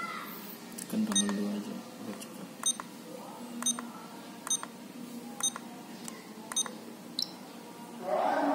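Keypad presses on a Verifone VX675 card payment terminal, each giving a short, high beep. There are about six, a second or so apart, as the terminal's download menu is stepped through from one file to the next.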